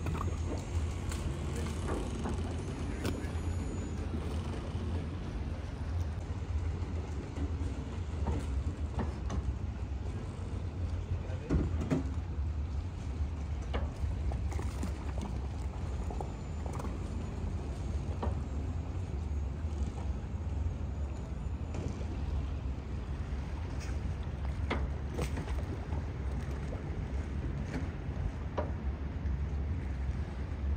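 Steady low mechanical hum from a large moored motor yacht's onboard machinery, with scattered light knocks and clicks.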